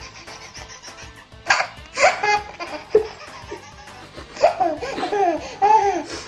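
A baby laughing in short bursts, then in a longer run of laughs from just past the middle to the end.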